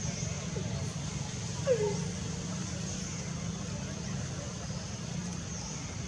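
Outdoor background with a steady low rumble, and one short downward-sliding call about a second and a half in.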